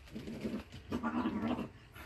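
A cat giving two drawn-out calls, the second longer than the first.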